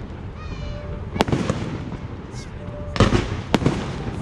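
Aerial fireworks shells bursting: three sharp bangs, about a second in and twice close together near three seconds, each with an echoing tail.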